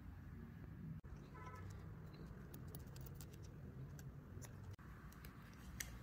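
Faint scattered clicks and small taps from scissors snipping and handling a rubber balloon, over a low steady room hum.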